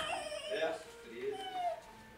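Faint, brief voices in the room: the tail of a spoken phrase at the start, then a few soft, wavering vocal sounds.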